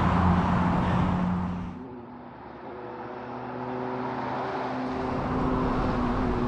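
Road traffic: a car going past close by, its engine and tyre noise loud until it cuts off about two seconds in, followed by a quieter steady engine hum that slowly grows louder.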